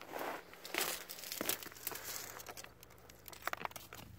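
Rustling and crunching from someone moving about close to the microphone on a rocky outcrop. It comes in a few short bursts in the first second and a half, then scattered small clicks and crackles.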